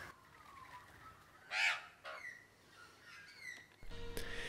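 A single short, loud bird call about one and a half seconds in, followed by a few faint short chirps.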